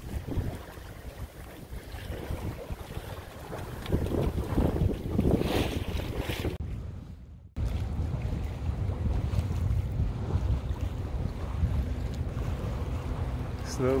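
Wind buffeting the microphone aboard a sailboat under sail, a gusty low rumble with water washing past the hull. The sound drops out briefly about halfway through.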